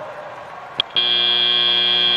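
Arena end-of-match buzzer at a robotics competition, a loud, steady, harsh tone that starts suddenly about a second in, marking the end of the match. A short click comes just before it.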